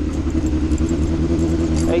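Honda Hornet motorcycle's inline-four engine running steadily at an even cruising speed, heard from on the bike. A man's voice starts near the end.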